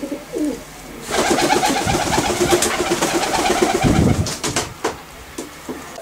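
Domestic pigeon cooing in a long pulsing run from about a second in until just past four seconds, over the rustle of feathers and a hand stroking it, with a soft bump near the end of the coo and a few small clicks after.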